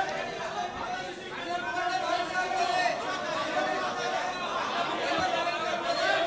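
Indistinct chatter of many people talking at once in a hall, with no single voice standing out.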